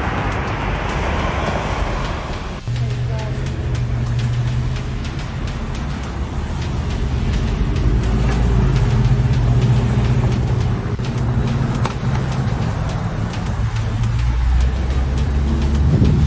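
A broad rushing noise for the first couple of seconds, cut off abruptly. After it comes a steady low hum of a vehicle engine running.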